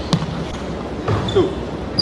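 Basketball bouncing on a hardwood gym floor: a sharp bounce just after the start and another thud about a second and a half in, in a large echoing gym.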